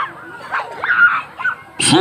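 Children's shouts and squeals in the crowd: several short high calls sliding up and down in pitch. Near the end a loud burst of noise into the microphone comes just as a man begins to chant.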